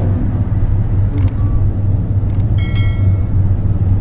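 Steady low rumble of a moving car's engine and road noise, heard from inside the cabin, with a couple of faint clicks.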